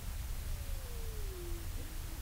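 Room tone with a steady low rumble and faint hiss. About half a second in, a thin single tone glides slowly downward for about a second.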